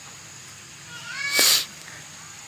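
A short animal call about a second in, rising in pitch and ending in a loud harsh burst.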